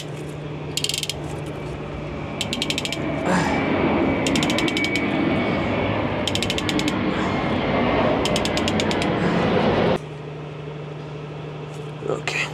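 Ratchet clicking in five short runs as the fuel filter bowl of a Pratt & Whitney PW1100G engine is turned tight. A louder steady rushing noise sets in about three seconds in and cuts off suddenly near the end.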